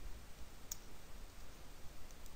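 A few faint computer keyboard keystrokes, with one clearer click about two-thirds of a second in, over a low background hum.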